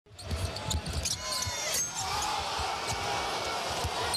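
Basketball game sound: a ball dribbled on a hardwood court, with short low thuds repeating through, sneakers squeaking about a second in, and arena crowd noise swelling in the second half.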